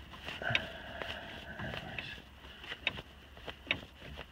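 Scattered metal clicks and clinks of a hand tool working the turnbuckle on a Kubota L5450's three-point-hitch link, as it is tightened.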